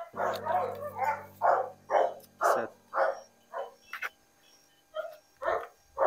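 A dog barking repeatedly, about two barks a second, pausing briefly about two-thirds of the way through before barking again.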